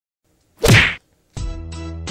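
A sharp swish-and-whack sound effect lasting under half a second, then music with a bass line kicking in about a second and a half in.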